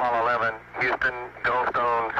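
A man speaking over an air-to-ground radio link, the voice narrow with the high end cut off: an Apollo 11 astronaut's transmission to Houston.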